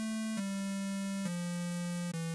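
ReaSynth software synthesizer playing a pure square wave, played from a virtual MIDI keyboard. It sounds a slow descending line, three held notes each stepping down from the last, joined with no gaps.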